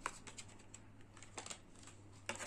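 A few light clicks and taps from the smartwatch and its packaging being handled as the watch is taken out of the box. There is one sharper click at the start and another about a second and a half in.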